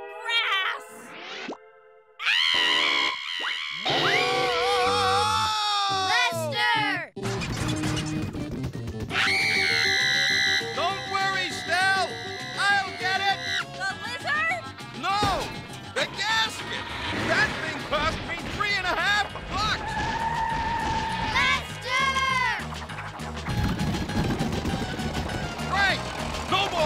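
Cartoon soundtrack: music with comic sound effects and untranscribed character voices, full of rising and falling pitch glides. A fuller, beat-driven music bed comes in about seven seconds in.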